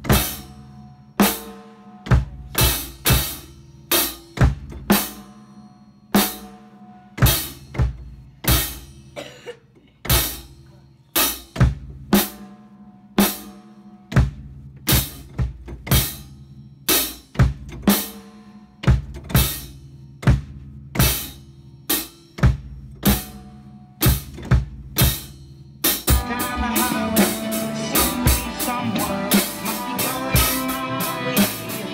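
Drum kit played in a sparse pattern of separate strokes on snare and bass drum, roughly one or two a second. About 26 seconds in, a song with guitar comes in and the drumming turns dense and continuous along with it.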